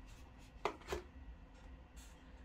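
Damp sphagnum moss and a plastic tub rustling briefly twice as a clump of seedlings is lifted out by hand.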